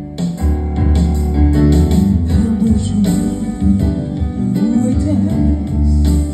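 A woman singing live into a microphone over a musical accompaniment; just after the start a fuller arrangement with strong bass and regular beats comes in.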